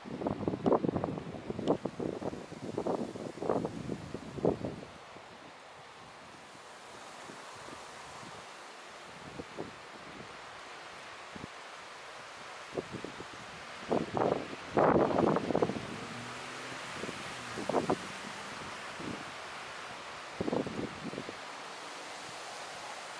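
Irregular bursts of rustling and wind buffeting over a steady outdoor hiss. The bursts cluster in the first four or five seconds and again a little past the middle, with a few shorter ones near the end.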